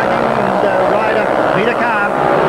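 Speedway motorcycles' single-cylinder engines running hard as the bikes race through a turn, with a man's race commentary over them.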